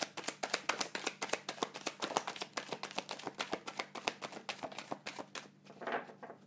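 A deck of cards being shuffled by hand: a fast, irregular run of light card clicks and slaps that stops about five and a half seconds in. Near the end, a softer rustle as cards fall out onto the table.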